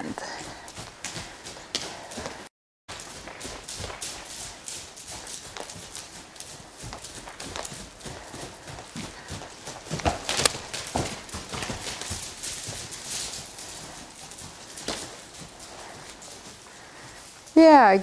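Hoofbeats of a saddled Icelandic horse moving loose over a hay-bedded arena floor: a run of soft, irregular thuds. The sound drops out completely for a moment about two and a half seconds in.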